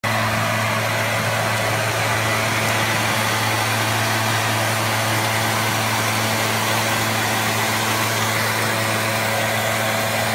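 Gas backpack leaf blower's two-stroke engine running steadily at constant speed: a steady hum under a loud hiss of rushing air.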